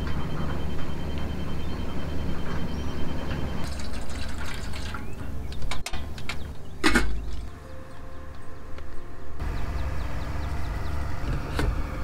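Coffee being made at a portable camp stove: metal pot and French press clinking, and water being poured, over a steady low rumble. A sharp ringing clink about seven seconds in is the loudest sound.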